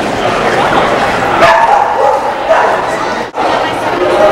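A dog barking a few sharp times about midway, over the steady chatter of a crowd in an indoor hall.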